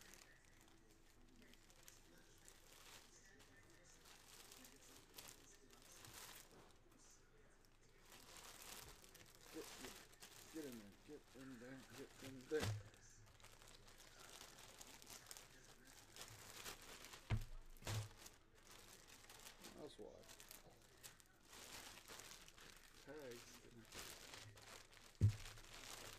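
Plastic packaging crinkling and rustling as a folded basketball jersey is worked back into its bag, with a few soft thumps on the table about halfway through and near the end.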